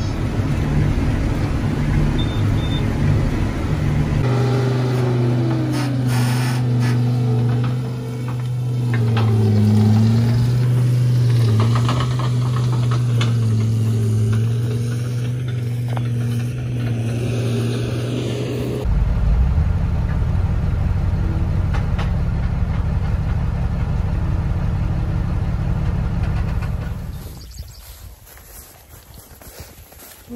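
Tractor engine running steadily while pulling a hay baler, its pitch wavering slightly with the load. About nineteen seconds in it gives way to a steady low rushing noise, which drops away a few seconds before the end.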